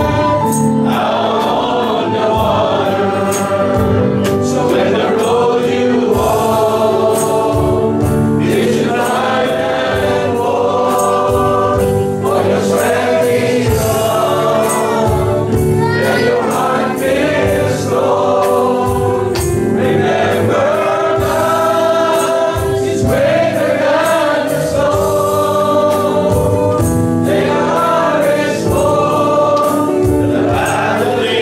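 A church congregation singing a worship song together.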